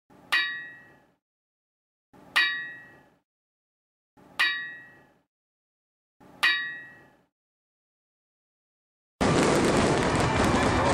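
Four ringing metallic clangs, evenly spaced about two seconds apart, each dying away in under a second. Near the end a loud, continuous intro theme cuts in.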